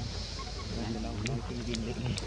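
Indistinct voices talking in the background, wavering in pitch, over a steady low hum.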